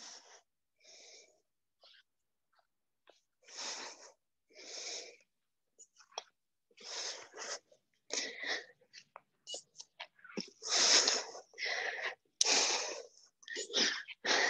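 Heavy breathing of a person straining through push-ups close to the microphone: short, sharp breaths in and out, coming quicker and louder toward the end.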